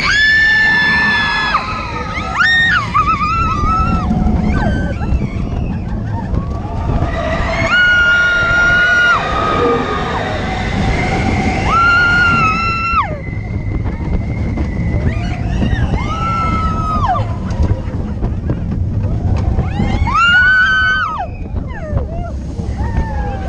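Riders on the Expedition Everest roller coaster screaming, about six long high screams of a second or two each, over the steady low rumble of the coaster train running on its track.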